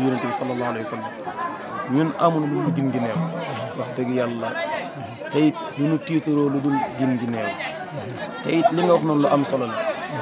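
A man's voice singing unaccompanied in a slow, chant-like style, holding several notes for about a second each as they slide down in pitch.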